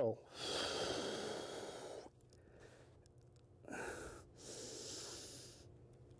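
A man's heavy breathing through the reps of a prone dumbbell leg curl: one long breath of about two seconds, then after a pause a short breath and another longer one.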